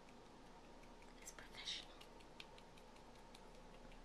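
Near silence, with a few faint clicks and taps from hands handling a plastic fashion doll and its accessories. There is a brief, soft breathy hiss about a second and a half in.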